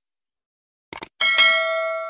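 A quick double mouse-click sound effect about a second in, then a bright bell ding that rings out and slowly fades.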